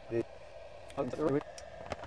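Short bits of a man's voice over the faint steady hum of a 12 V DC to 240 V AC inverter's cooling fan, with a sharp click near the end.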